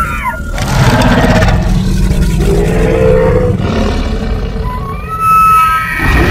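Tyrannosaurus rex roar sound effect: a deep, drawn-out roar that swells louder near the end, with music under it.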